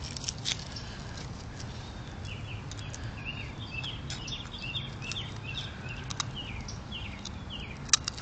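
A small songbird chirping over and over, short slurred notes about two or three a second, starting about two seconds in. A few sharp clicks come in between, the loudest right at the end.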